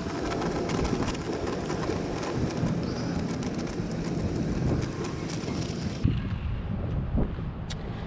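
Homemade chalk on a pivoting drawing tool scraping steadily along hard ground as it is dragged around an arc, a rough scratchy hiss. The high scratching drops away suddenly about six seconds in.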